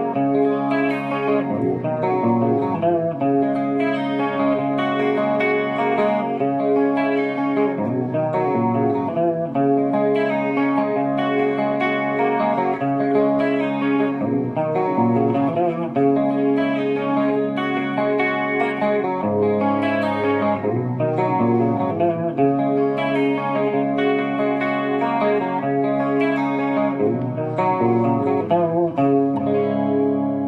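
Electric guitar played through a NUX Chorus Core chorus pedal: continuous chords and melodic lines with the chorus effect on.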